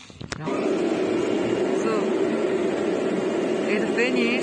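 Two sharp clicks, then about half a second in a CNC oscillating-knife cutting machine starts up with a loud, steady mechanical hum that keeps running.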